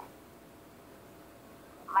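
Faint steady hiss, a pause between lines of a phone call, with a woman's voice starting right at the end.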